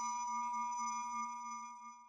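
Sustained electronic ringing tone made of several steady pure pitches, the decaying tail of a music sting, fading away toward the end.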